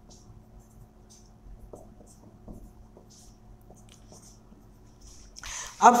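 Marker pen writing on a whiteboard: faint, short scratchy strokes of the felt tip as letters are written, stopping shortly before the end.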